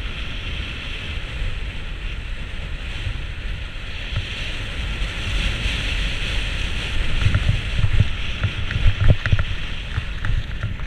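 Skis sliding and scraping over hard, crusty snow during a downhill run, a steady hiss under wind buffeting the microphone. In the last few seconds low bumps and knocks come more often and louder as the skis ride over rougher snow.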